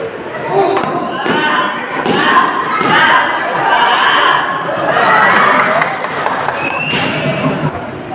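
A badminton rally: a string of sharp racket hits on the shuttlecock, with one loud hit near the end, over spectators talking and shouting.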